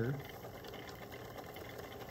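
Magnetic stirrer running, its stir bar spinning in a foam-cup calorimeter with a steady, even whir, just after being turned up faster.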